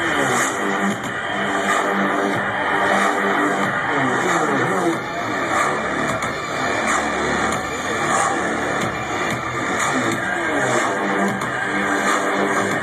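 Loud live dubstep played over a big concert sound system and heard from within the crowd: deep bass kicks in right at the start, under wobbling synth lines that slide up and down in pitch.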